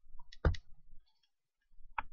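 A low thump about half a second in and a sharp click near the end, with quiet between.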